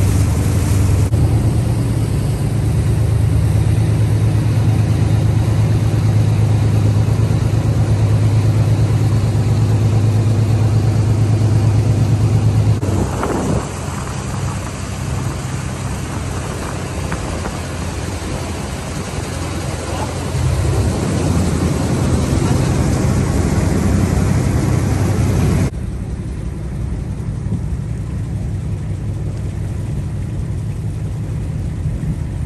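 Boat's engine running with a steady low drone under the rush of water and wind, the level dropping abruptly about halfway through and again near the end.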